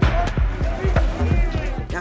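Repeated low drum thumps, several a second, over the voices of a street crowd.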